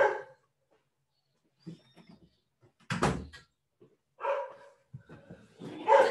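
A dog barking several times in short separate barks, the loudest about three seconds in.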